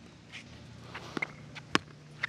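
Pickleball rally on a hard court: a handful of sharp pops from the paddles striking the ball and the ball bouncing, with shoes scuffing on the court. The loudest pop comes about three-quarters of the way through.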